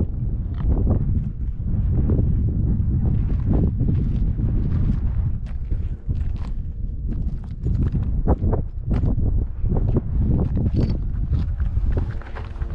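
Footsteps crunching along a rough lava-rock trail at a walking pace, about one or two steps a second, over a steady low rumble.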